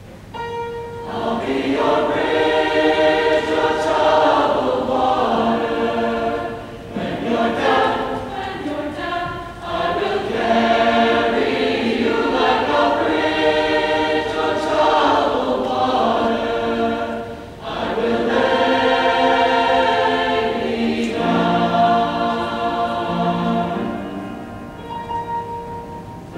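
A mixed high school choir singing, coming in about a second in and carrying on in long phrases with short breaks between them.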